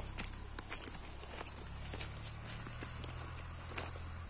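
Faint, irregular footsteps on a dirt footpath strewn with dry leaves, over a low steady rumble.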